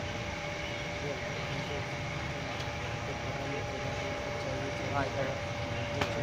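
Indoor market background: a steady machine hum with a few held tones, under faint voices talking nearby, and a short voice about five seconds in.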